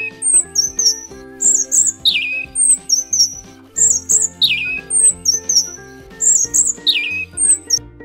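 Bird call played as a robin's: a short high chirp and a falling whistle, repeated about once a second, over background music with held notes.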